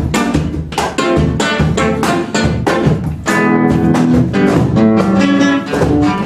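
Acoustic guitar plucking the instrumental introduction of a song, a run of picked notes that gives way to sustained chords about halfway through.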